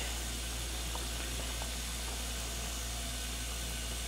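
Steady, even hiss with a low electrical hum underneath: room tone and microphone noise.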